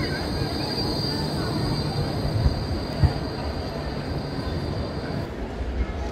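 Bombardier Flexity tram running alongside the platform with a low rumble and a steady high whine that cuts off about five seconds in, with two short thumps in the middle.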